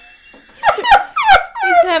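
A man and a woman laughing together in short repeated bursts, starting about half a second in.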